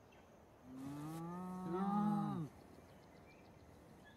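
Spotted hyena giving one long, low call of about two seconds, starting a little under a second in, its pitch held fairly level and then dropping away as it ends.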